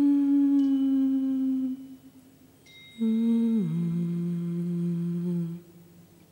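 A voice humming long, low held notes: one note held for about two seconds, then after a short pause a second note that slides down and is held for about two more seconds.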